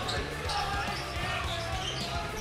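Basketball bouncing on a hardwood gym floor, a few dribbles over the steady noise of a gym crowd.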